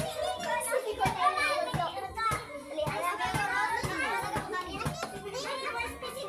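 Lively overlapping chatter of children and adults talking at once, with a few sharp knocks.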